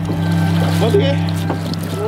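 A boat engine's steady low drone, with short calling voices and music over it.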